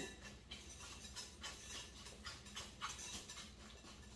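Wire whisk stirring a thick cream cheese and sweetened condensed milk mixture in a glass bowl: faint, irregular soft clicks and scrapes of the wires against the glass.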